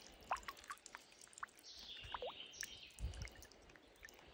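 Water dripping off a wet hand and a shed prawn shell into shallow water: a faint, scattered series of small plinks.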